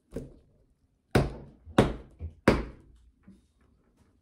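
Handling noise from a phone recording itself: a soft knock, then three sharp thumps about two-thirds of a second apart as the phone is fumbled and bumped, followed by a fainter knock.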